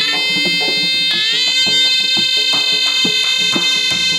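Shehnai horns playing a long held note that glides up into pitch twice and then holds steady, over a dhol drum beating a steady rhythm.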